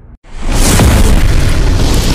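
A deep cinematic boom sound effect of a logo-reveal intro. It hits suddenly after a brief moment of silence and carries on as a loud, sustained rumble, with music under it.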